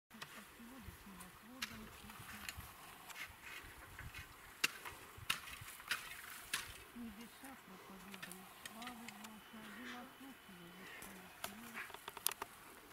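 Potatoes being gathered by hand from loose soil, with irregular sharp knocks as they are tossed into a metal bucket. Faint women's voices talk in the background.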